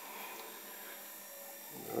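Faint steady hum of a running Grundfos UPS 25-40 wet-rotor circulation pump moving hot water through the boiler.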